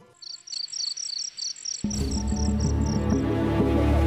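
Rapid, evenly repeated high chirps like a cricket's, about six a second, stopping after about three seconds. From about two seconds in, a low, steady drone of background music sets in under them.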